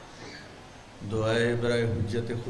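A man's voice begins a chanted recitation about a second in, drawing out long, steady-pitched notes, after a quiet first second.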